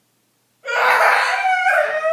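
A girl wailing loudly in a high, wavering voice, a staged fit of crying, starting a little over half a second in.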